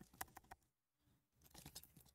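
Faint computer keyboard keystrokes: a quick run of clicks in the first half second and a few more near the end, with near silence between.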